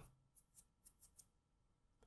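Near silence: room tone, with a few faint short clicks in the first half.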